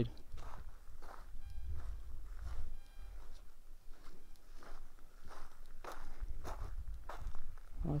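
Footsteps crunching on dry gravel and brush as someone walks at an uneven pace, over a low rumble of wind on the microphone. A few faint short chirps sound about two seconds in.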